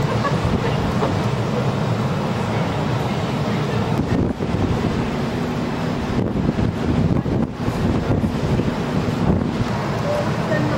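Wind buffeting an outdoor microphone, a loud, uneven low rumble that fluctuates without a break, over a steady background rumble.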